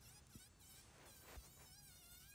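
Faint, high whine of a handheld rotary carving tool, its pitch wavering as the burr cuts into walnut.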